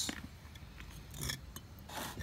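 Bricks scraping and knocking against each other as they are shifted by hand, in two short bouts: about a second in and again near the end.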